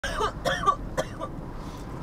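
A person coughing or clearing their throat three times in quick succession inside a moving car's cabin, over the low rumble of the car. The bursts fade out after about a second, leaving only the cabin rumble.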